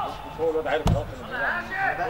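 A football kicked hard once by the goalkeeper: a single sharp thump a little under a second in, with players shouting and calling around it.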